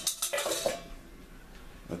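Stainless steel mixing bowl clattering as it is picked up and handled: a quick cluster of metallic clinks and knocks in the first half-second or so.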